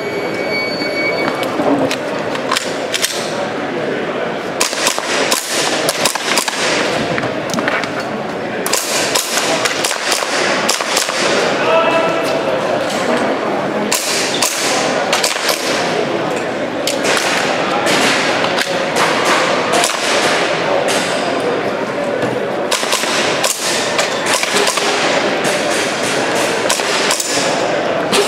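An electronic shot-timer beep in the first second, then a string of airsoft pistol shots, single and in quick clusters, scattered through the run, over steady crowd chatter in a busy exhibition hall.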